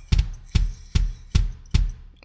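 Bass drum pedal played on the kick pad of a Roland electronic drum kit: steady single kick-drum beats, about two and a half a second. The heel stays flat on the footboard and the beater comes off the pad after each stroke.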